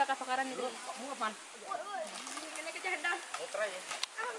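Casual chatter: the voices of a few people talking near the microphone, not clearly made out.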